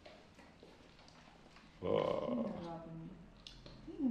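A person's drawn-out wordless vocal sound, falling in pitch, about two seconds in after near silence, with another starting near the end.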